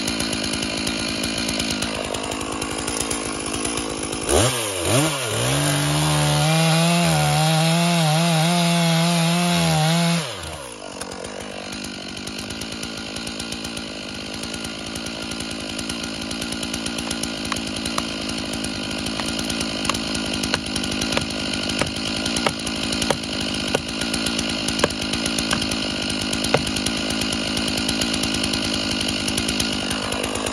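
Stihl MS461 two-stroke chainsaw idling. About four seconds in it revs up to high speed, holds there for about six seconds, then drops back to idle. Short sharp knocks sound over the idle.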